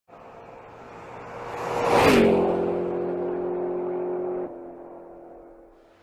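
Car drive-by sound effect. Engine noise rises to a loud pass about two seconds in, where its pitch drops, then holds a steady engine note. The note falls away sharply at about four and a half seconds and fades out.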